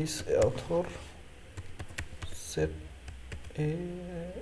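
Typing on a computer keyboard: a run of uneven key clicks. Short bits of a voice come in near the start and again near the end.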